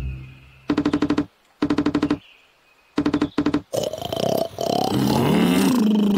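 Cartoon woodpecker pecking on a tree trunk: three short bursts of rapid knocks, about a dozen a second, with pauses between. After the third burst a sleeping bear groans.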